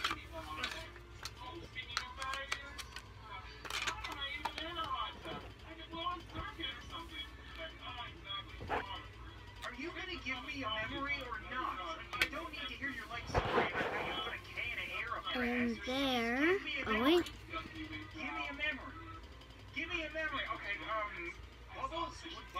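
Speech and music at a moderate level from a video or game playing in the background, with a few sweeping pitched sounds past the middle.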